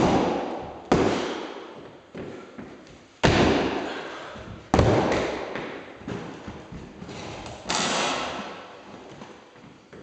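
Heavy thuds of a lifter's feet in weightlifting shoes landing on a hollow wooden plyometric box and on the wooden floor during box jumps. There are about five thuds: one right at the start, then about a second in, around three seconds, just under five seconds and near eight seconds. Each one rings out in the room for a second or more.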